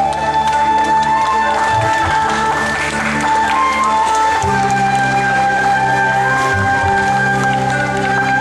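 Instrumental music from a cải lương stage play, with a long held melody note over steady low notes. The low notes change about halfway through.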